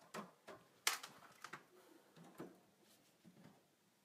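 Faint, irregular clicks and knocks of plastic containers and metal manicure instruments being handled, the loudest knock about a second in.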